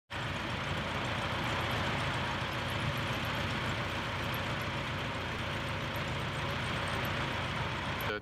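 Diesel engine of a semi tractor hauling an oversize load, running steadily with a low hum under a broad hiss.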